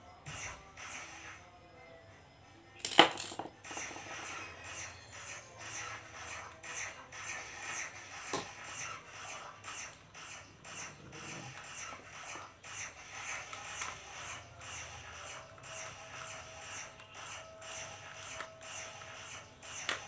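A screwdriver driving screws into the plastic housing of a four-socket power strip: one sharp click about three seconds in, then a steady run of small scraping clicks as the screws are turned.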